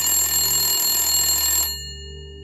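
Telephone ringing as a sound effect: one long, loud, buzzing ring that cuts off suddenly near the end. A steady low hum runs under it.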